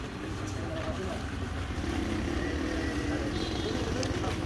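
A steady low rumble of a vehicle engine, with people's voices faint in the background.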